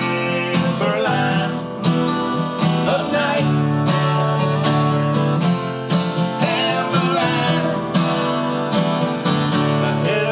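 Two acoustic guitars strummed together in a country-folk song, with men's voices singing at times.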